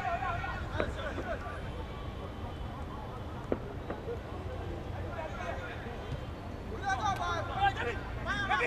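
Open-air football pitch ambience: players' and onlookers' shouts and calls carrying across the field, clearer in the first second and again near the end, over a steady low rumble.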